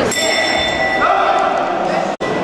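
A single bell strike rings with a high, clear tone that fades after about half a second and leaves a faint lingering ring, over people's voices in the hall.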